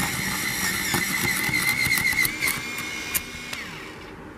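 United Office battery-powered electric pencil sharpener running, its small motor whining steadily while the carbon-steel cutter shaves a pencil with rapid crackling clicks. The motor winds down in pitch about three and a half seconds in.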